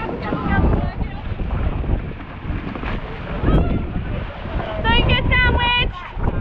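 Wind buffeting the microphone over choppy sea water churning around an outrigger boat and swimmers, with people's high-pitched shouts coming through, the loudest near the end.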